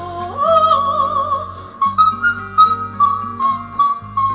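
A woman singing very high notes in a vocal high-note challenge over an instrumental backing track: a held note with wide vibrato in the first second and a half, then a string of steady, thin, whistle-like high notes stepping slowly downward.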